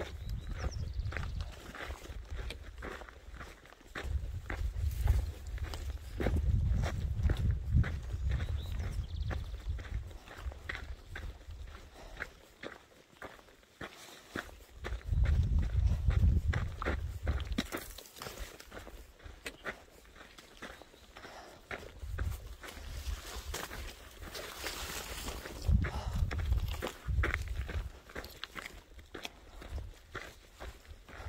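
A hiker's footsteps on a rocky dirt trail, with the tips of trekking poles clicking on the ground at a steady walking pace. Low rumbles on the microphone come and go several times.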